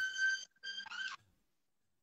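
A high, steady tone that holds until about half a second in, then a shorter one that rises in pitch at its end, followed by silence.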